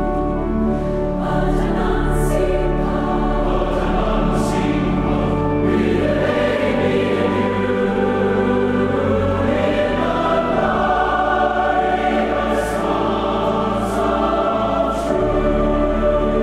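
Choir singing a hymn in sustained, held chords, laid over the pictures as background music.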